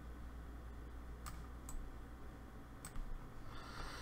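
Three faint, sharp computer mouse clicks, two close together just past a second in and one near three seconds, over a steady low electrical hum.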